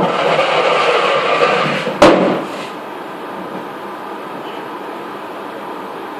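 Workshop handling noise: a sharp knock, about two seconds of loud scraping and rustling, then a bang that rings briefly, after which only a steady background hum remains.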